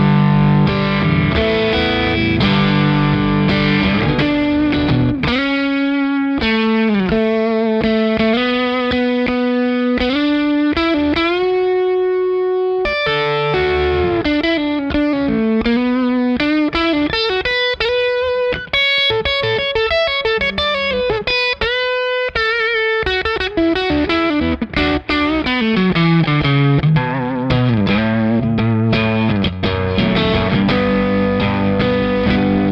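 Electric guitar with single-coil pickups played through a Keeley Aria Compressor Drive pedal, set to a low-gain clean boost with the compressor on. It opens with strummed chords, moves to single-note melodic lines with long held notes about five seconds in, and returns to chords near the end.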